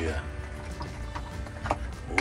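A wooden spoon stirring lobster pieces through a thick sauce in a metal pot, giving a few light clacks of shell and spoon against the pot from about a second in.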